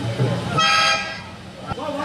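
A short, steady horn-like toot, about half a second long, starting about half a second in, with talk around it.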